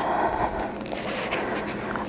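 Soft rustling and scraping of a thin plastic sheet as a rolled-out sheet of gum paste is lifted and handled.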